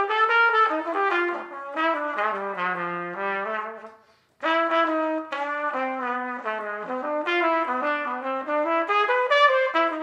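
Solo trumpet playing a jazz line at a slow tempo with every eighth note tongued, in two phrases separated by a short breath about four seconds in.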